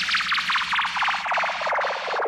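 Electronic DJ sound effect: a rapid pulsing buzz sweeping steadily downward in pitch, a synthesized downlifter in a DJ remix.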